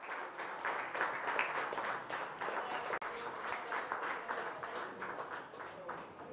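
A room full of people applauding, a dense patter of hand claps that thins out toward the end.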